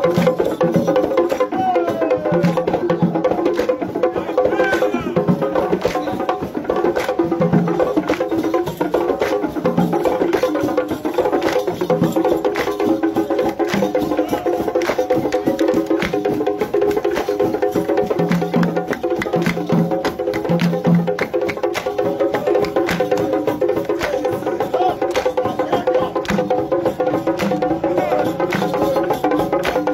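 Traditional percussion music: fast, continuous wooden clicking over held tones, with low drum strokes recurring through it, and crowd voices mixed in.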